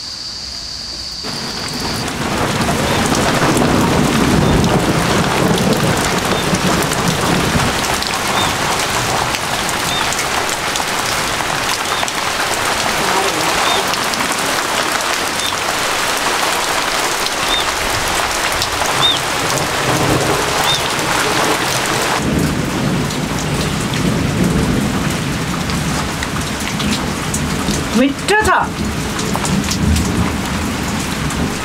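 Heavy rain falling steadily, setting in about a second in, with low rumbles of thunder swelling under it twice.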